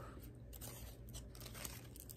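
Faint rustling and crinkling of folded die-cut paper as handmade paper rosettes are handled, with a few soft crackles over a steady low hum.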